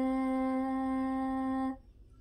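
A girl singing one long held note unaccompanied. The pitch rises slightly at the start, holds steady, and stops near the end.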